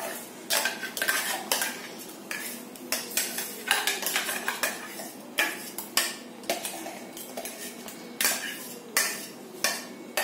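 A metal spoon scraping and knocking against a stainless-steel mixer-grinder jar, working thick ground gravy paste out into a kadai: a string of irregular metallic scrapes and clinks, one or two a second.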